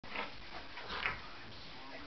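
Two dogs play-fighting, with two short dog vocalizations about a second apart, the second one the louder.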